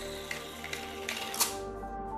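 Light clicks and taps of 3D-printed plastic parts being fitted together as a ring is seated over a lamp socket, with one sharp click about a second and a half in, over background music.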